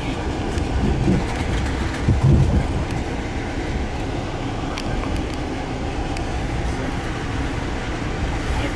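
Amtrak passenger train heard from inside the car while under way: a steady low rumble of wheels on track, with a couple of louder low bumps about one and two seconds in and a few light clicks.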